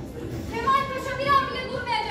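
Speech: a young student's voice declaiming a line in Turkish, starting about half a second in.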